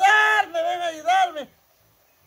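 A man's voice crying out in high-pitched, drawn-out wails, acting out a scream of fright; it breaks off about a second and a half in.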